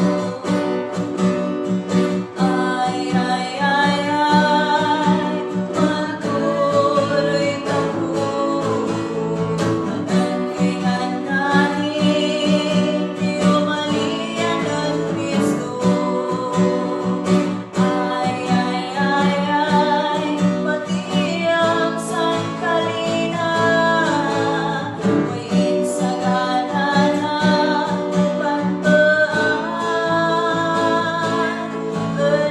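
A woman singing a Kankana-ey gospel song over steady instrumental accompaniment, the melody running continuously.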